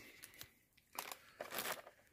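Faint rustling and a few light scrapes of a clear plastic organizer box of wire connectors being handled on a workbench.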